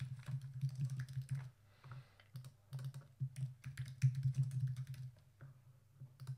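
Typing on a computer keyboard in quick bursts of keystrokes, with brief pauses between words.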